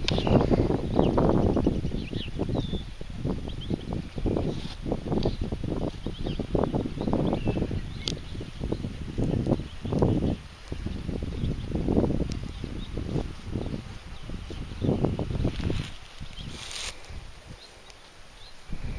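Wind buffeting the microphone in uneven low gusts, with a few faint high bird chirps.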